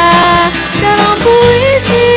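Live band music: strummed acoustic guitars, electric bass, conga drum and keyboard playing a song, with a melody of long held notes over them.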